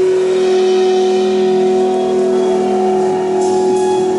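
Live jazz trio of electric guitar, bass and drums playing long, held tones that ring steadily, with a short cymbal wash near the end.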